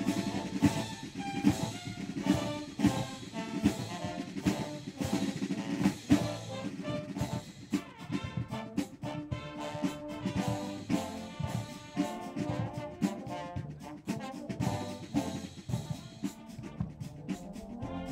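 Massed marching bands playing together: brass over marching snare and bass drums, the drum strokes growing faster and denser from about seven seconds in.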